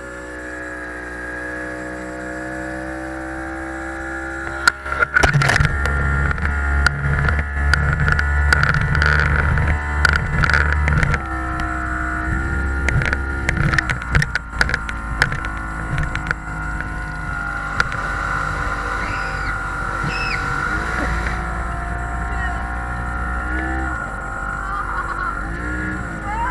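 A small speedboat's motor running at speed, a steady whine. About five seconds in a deep rumble and a run of knocks and rubbing come in, from the camera being handled against the microphone.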